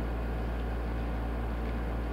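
Steady low hum with an even hiss underneath: unchanging room background noise with no distinct events.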